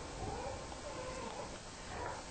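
A faint, high, wavering voice-like call over a low steady hum.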